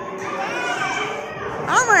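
Chatter and calls of many children playing in a large indoor hall, a continuous mix of overlapping young voices.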